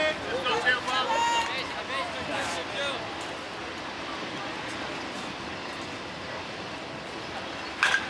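People calling out over a baseball field for the first three seconds, then a steady outdoor hush. Just before the end comes one sharp crack at home plate as the pitch arrives.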